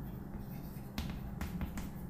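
Chalk tapping and scraping on a blackboard as words are written, with sharp clicks of the chalk about a second in and a few more close together toward the end.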